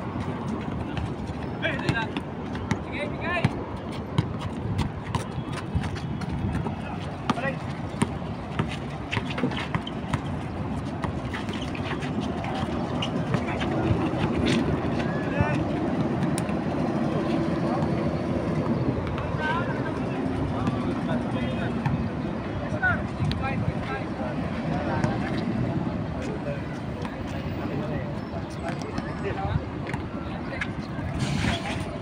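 Pickup basketball game on an outdoor concrete court: a ball bouncing with repeated sharp knocks and players' voices calling out, over a steady hum of road traffic.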